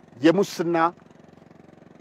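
A man speaking one short phrase early on, then a pause with only a faint steady hum underneath.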